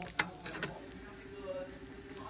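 Plastic bag of custard buns crackling a few times as it is handled, with a faint voice underneath.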